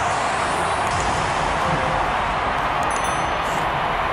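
Steady crowd noise from a football match broadcast, an even wash with no single cheer or whistle standing out; the crowd sound is simulated, as the stands are empty.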